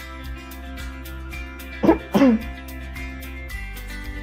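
Background music with a steady beat; about halfway through, a person coughs twice, short and loud over the music.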